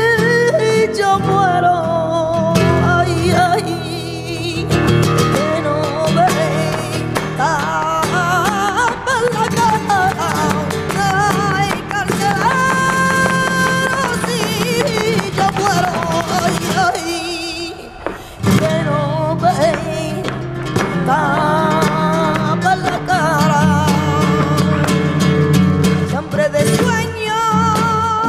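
Live flamenco: cante singing with long ornamented, wavering lines over flamenco guitar, with hand claps (palmas) and the dancer's footwork tapping along. The music thins out briefly about eighteen seconds in, then picks up again.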